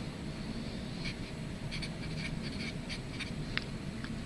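Felt-tip marker writing on paper: a scatter of faint short strokes over a low, steady room hum.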